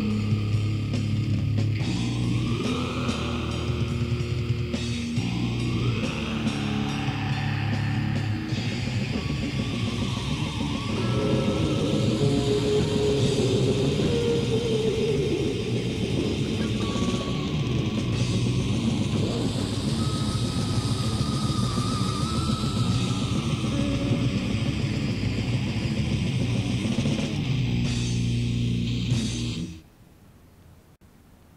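Death/black metal demo recording played from cassette: a band with distorted guitars plays densely and loudly. It stops abruptly just before the end, leaving only faint hiss.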